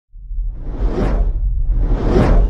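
Whoosh sound effect over a deep rumble, part of an animated logo intro: it swells in from silence, peaks about a second in, and a second whoosh builds near the end.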